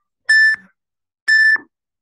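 Workout interval timer counting down to the next exercise: two short electronic beeps, one second apart, at the same high pitch.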